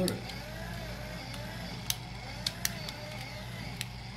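3D-printed plastic model of a Subaru boxer engine turning over, driven by a small electric motor through a pinion gear on the flywheel: a steady mechanical whir of plastic gears and moving parts, with a few sharp clicks.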